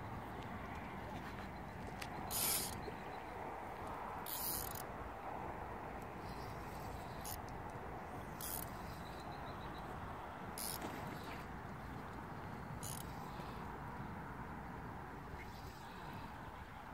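Spinning reel's drag giving line in about half a dozen short, high-pitched buzzes as a hooked fish pulls against the light rod, over a steady low noise.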